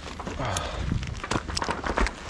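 Clothing, webbing and gear rustling and knocking against a body-worn camera as the wearer moves in close among others, with a handful of sharp knocks.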